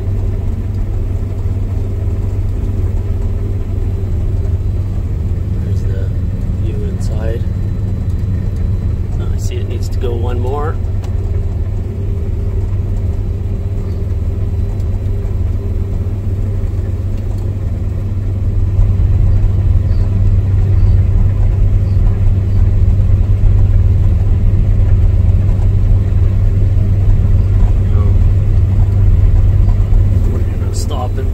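Combine harvester running while harvesting, heard from inside the cab: a steady low engine and machinery hum that gets louder about two-thirds of the way in.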